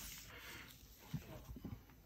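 Quiet room tone with a few faint, soft low taps a little past the middle.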